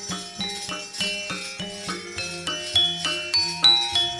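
Javanese gamelan ensemble playing: bronze metallophones struck in a steady pulse of about three notes a second, each note ringing on over the next.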